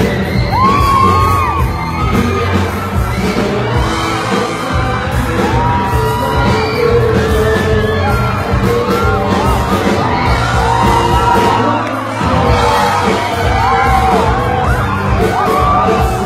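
Pop-rock band playing live: a male lead vocal over electric guitar, bass and drums, loud and continuous, with the crowd shouting and whooping along.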